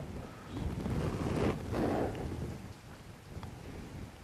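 Muffled rustling rumble of heavy vestment cloth moving against a close microphone as the priest bends over the altar, swelling for about two seconds and then dying down.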